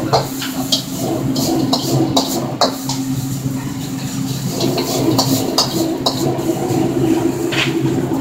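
Stir-frying in a wok: a metal ladle clanks and scrapes against the wok in irregular strikes, a few a second at times, over the steady roar and low hum of a restaurant wok burner.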